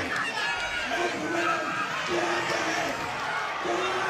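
Boxing crowd shouting during a bout, with single men's voices calling out in three short held shouts over a steady hubbub.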